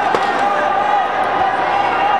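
Indistinct voices and arena ambience, with a couple of sharp slaps near the start as the wrestlers hand fight.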